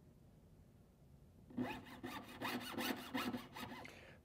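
Jeweller's saw cutting through small medium-wall metal tubing: quick back-and-forth strokes of the fine blade, starting about one and a half seconds in.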